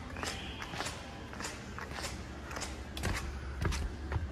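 Footsteps of sneakers on a hard tile floor, about two steps a second, over a low steady background hum.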